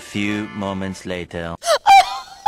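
Rooster crowing sound effect: a cock-a-doodle-doo in about five pitched segments, the last one rising at the end. A short loud sound comes just before the end.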